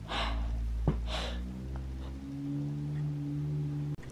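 Two breathy puffs close to the microphone, about a second apart, like a person breathing out, over a low steady hum.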